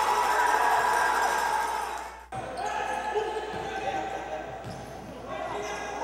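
Natural sound of a basketball game in a gym: voices murmuring around a large hall and a basketball bouncing on the hardwood court. The sound cuts out abruptly about two seconds in and resumes.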